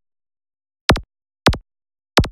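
Two short, sharp click-like pops about half a second apart, each dropping quickly in pitch: sound effects for the cursor clicks of an animated logo sting.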